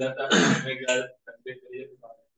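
A man clears his throat once, loudly, amid low, indistinct speech.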